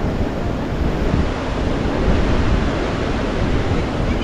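Wind buffeting the microphone in a steady low rushing rumble, mixed with the wash of sea surf.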